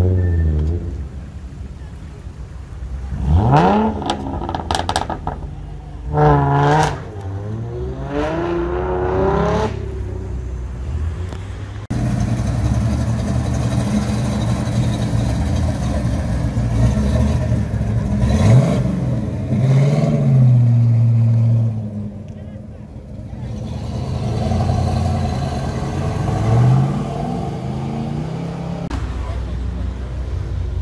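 Car engines revving hard and accelerating away one after another, each rev a sharp rise in pitch, with a cluster of rapid revs early on and single blips later, over steady engine rumble.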